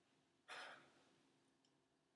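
A man takes a single audible breath, like a short sigh, about half a second in. It starts suddenly and fades within half a second, with near silence around it.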